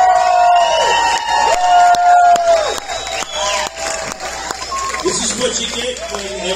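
Two long drawn-out shouted calls, each held about a second and falling off at the end, with a crowd cheering and whooping; bluegrass instruments start up near the end.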